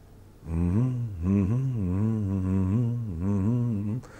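A man humming a low, wavering tune. It starts about half a second in and carries on for some three seconds without a break.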